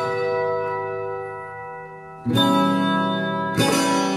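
Music: plucked-string chords, struck three times (at the start, a little past the middle and near the end), each left to ring and fade.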